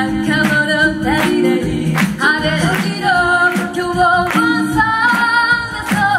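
Female a cappella group singing in close harmony, several voices holding chords over a low bass line, with a steady beat about twice a second.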